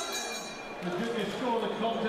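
Faint voice speaking in the hall, starting about a second in, over a low even hiss.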